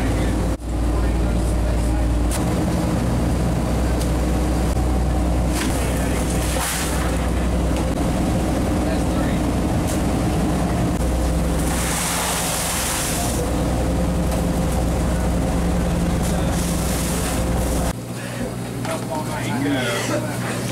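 Fishing boat's engine running with a steady low drone while underway, with a burst of hiss about twelve seconds in. The drone cuts off abruptly near the end.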